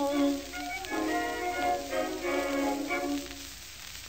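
Closing instrumental bars of an early acoustic phonograph recording: a few held chords from the accompanying band after the last sung line, thinning out near the end, over a steady surface hiss.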